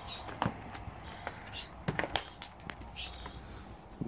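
Footsteps on a debris-strewn floor: scattered crunches and light knocks of broken plaster, board and glass shifting underfoot, with a few faint, brief high chirps.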